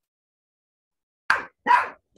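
Over a second of dead silence, then a dog barks twice in quick succession, short and sharp, picked up through a video-call microphone.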